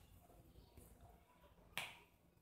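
Near silence with one short, sharp click near the end.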